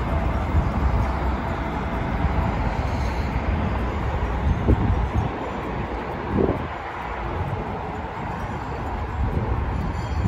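Steady low rumble of road traffic mixed with wind buffeting the microphone, with two brief higher-pitched sounds about four and a half and six and a half seconds in.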